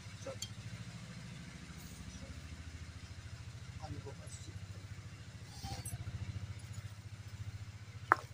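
A small engine idling: a steady low, fast-pulsing hum throughout, with a few faint clinks and brief soft voice sounds over it.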